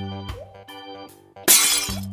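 Cartoon shattering sound effect of the egg bursting open, a loud crash about one and a half seconds in, lasting about half a second, over light background music.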